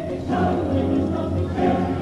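Choir singing a Christmas song with accompaniment, holding sustained chords that change about a third of a second in and again near the end.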